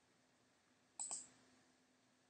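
A short double click from a computer mouse, pressed and released, about a second in, over a faint low hum.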